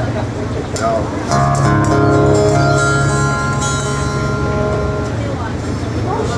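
A small acoustic band of guitar, bass and keyboard strikes one chord about a second in and lets it ring for about four seconds, the opening of a song to be played in E. Voices are heard for about a second before the chord.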